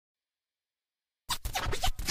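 Silent for just over a second, then a quick run of short scratchy record-scratch bursts opening a nu-disco track.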